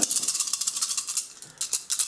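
A handful of Star Wars Legion attack dice shaken together, a quick clicking rattle.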